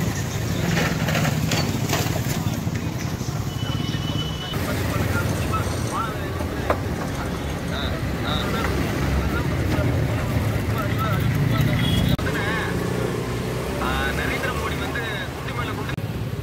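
Steady low rumble of street traffic, with faint voices in the background and a brief high beep about four seconds in.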